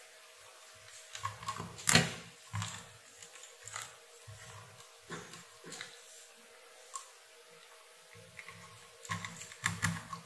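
Test leads, alligator clips and multimeter probes being handled on a workbench: scattered clicks, taps and rubbing, with one sharp knock about two seconds in, over a faint steady hum.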